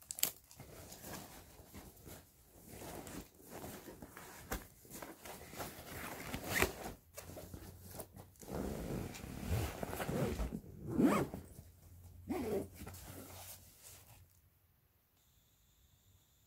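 Backpack zipper being pulled in several strokes, with fabric and packed items rustling and scraping as the bag is handled.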